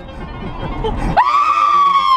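A woman's long high-pitched scream from the passenger seat inside a car, starting about a second in and held steady.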